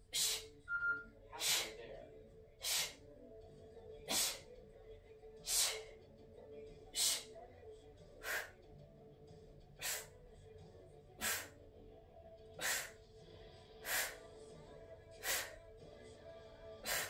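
A woman's sharp hissing exhales, a "shh" through the teeth about every second and a half, one breath with each rep of a lying kettlebell exercise. Faint background music underneath.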